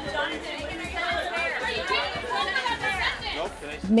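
Indistinct chatter of several voices talking over one another, with music underneath.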